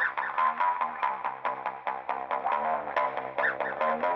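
Background music with a steady, quick beat.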